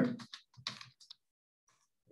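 A few keystrokes on a computer keyboard, bunched in the first second.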